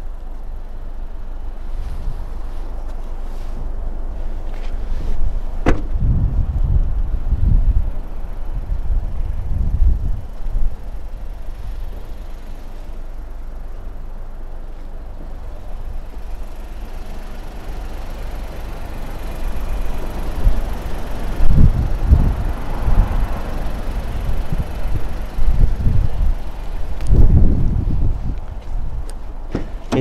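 Wind buffeting the microphone in irregular low gusts, with a single sharp knock about six seconds in.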